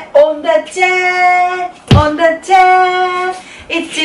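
A woman and a small boy singing the phrase "on the chair" unaccompanied, in long held notes, with one sharp thump about halfway through.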